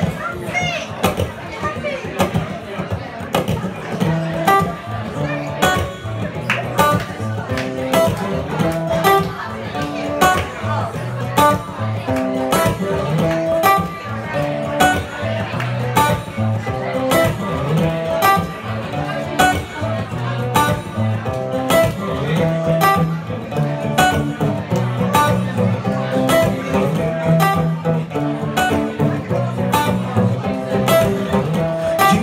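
Solo acoustic guitar playing an instrumental intro: picked notes repeating in a steady rhythm, with regular sharp strikes.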